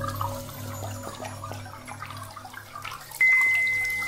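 Ambient meditation music: a low pulsing drone under trickling, dripping water sounds. About three seconds in, a single high bell-like tone is struck and rings on, slowly fading.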